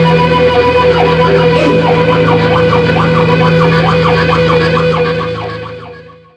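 Electric guitar music built on a held, droning chord, with a quicker repeating figure over it, fading out near the end.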